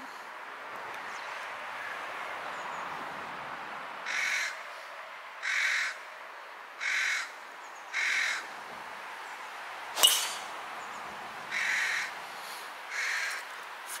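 A golf driver striking a ball off the tee, one sharp click about ten seconds in, the loudest sound. Around it a bird calls six times in short calls, about one every second and a half.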